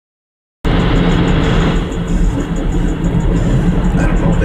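Inside a moving car: steady engine and road rumble with music playing, starting abruptly after a brief silence.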